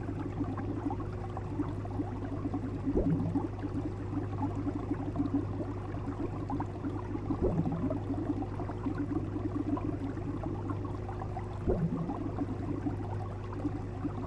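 Fish tank air bubbler: a continuous stream of bubbles burbling in the water over a steady low hum, with a louder burst of bubbling about every four seconds, three times.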